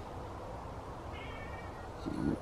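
A cat gives one short, faint meow a little past the middle, over low steady background noise.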